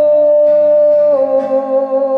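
Live male vocal holding a long sung note that steps down in pitch about a second in, over strummed acoustic guitar.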